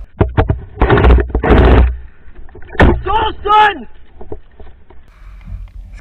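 Two short bursts of full-auto fire from an M249-style airsoft light machine gun, each about half a second, its electric gearbox cycling rapidly, after a few sharp clicks. A sharp crack follows, then a man shouts twice.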